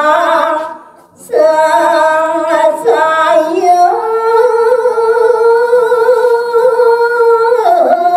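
A woman singing a Balinese geguritan verse solo and unaccompanied into a microphone, in slow, drawn-out phrases with wavering ornaments. There is a brief breath pause about a second in, and one long held note from about halfway to near the end.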